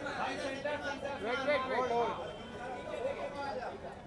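Chatter of several voices talking over one another, photographers calling out, loudest in the middle.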